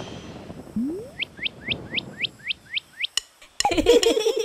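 Cartoon sound effect: a short rising tone about a second in, then a quick run of about nine high, falling chirps like cartoon birds tweeting. A click and the start of another sound come near the end.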